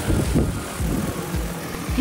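Large DJI Agras T50 agricultural drone lifting off, its rotors running with a steady rushing whir as it carries a load of about 46 pounds of grass seed.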